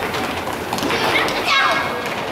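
Young children shouting and calling out over one another during a scramble for the ball, with scattered footfalls and knocks on a wooden gym floor.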